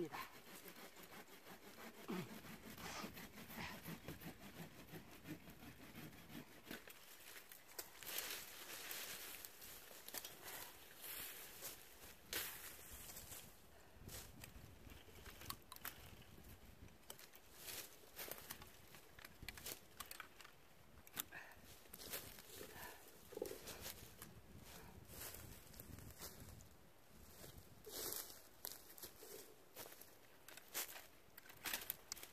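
Faint, irregular rustling and crackling of bare Japanese apricot branches being handled and cut during winter pruning, with scattered sharp clicks from the pruning loppers.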